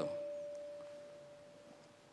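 A single steady ringing tone in the hall's sound system, carrying on after the voice stops and fading away over about two seconds. It is the kind of ring a PA gives when a handheld microphone sits close to feedback.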